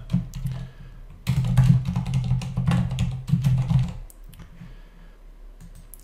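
Typing on a computer keyboard: a quick run of keystrokes lasting about three seconds, starting about a second in, with a few scattered key clicks before and after.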